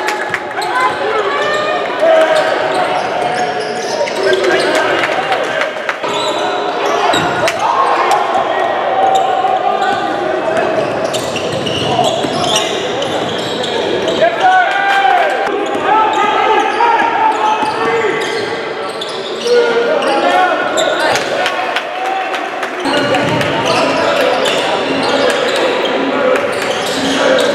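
Busy basketball gym: many overlapping voices of spectators and players, with a basketball bouncing on the court floor again and again.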